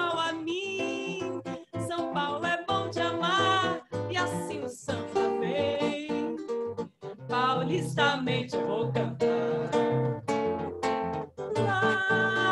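Acoustic guitar playing a quick run of plucked chords and notes, with brief breaks about two, four and seven seconds in.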